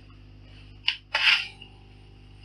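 Old telephone handset being lifted: a sharp click about a second in, then a short, louder rattle that leaves a faint ringing tone behind.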